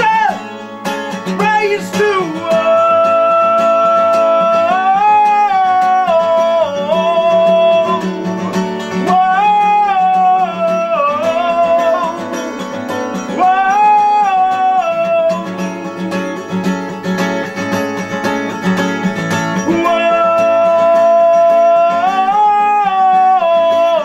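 A male voice singing long held notes that swoop up and down in repeated phrases, over a strummed capoed acoustic guitar.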